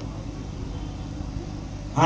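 Steady low rumble of background noise, with no clear event in it.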